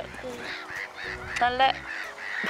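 Geese honking, with one short call about one and a half seconds in.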